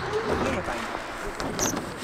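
Indistinct background talk over outdoor noise, with a BMX bike's tyres rolling on the skatepark ramp.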